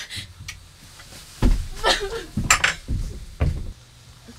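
Several heavy thumps and knocks on wood, bunched together in the second half, mixed with a few short voice sounds.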